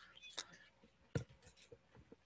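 A very quiet room with a few faint, short clicks; the clearest comes about a second in.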